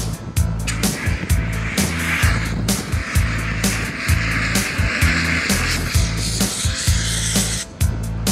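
A long hiss of a handheld fire extinguisher discharging, starting about a second in and cutting off near the end, over rock backing music with a steady beat.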